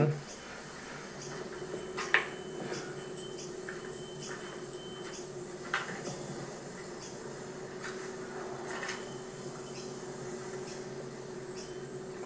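Quiet room tone with a steady low hum and a few faint clicks and knocks, the clearest about two seconds in and just before six seconds.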